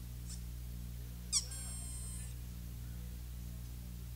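Steady low electrical hum from the live rig in a gap between songs. About a second and a half in comes a short high-pitched squeal that glides sharply upward and holds for under a second.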